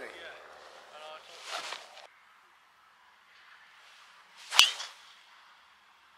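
Golf driver striking a ball off the tee: a quick swish of the swing and one sharp crack at contact, about four and a half seconds in.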